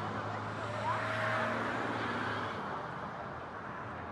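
A fire-rescue truck's engine passing, a low steady rumble that fades about two and a half seconds in, with a crowd's voices mixed in.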